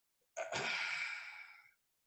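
A man's long, breathy sigh that starts about a third of a second in and fades away.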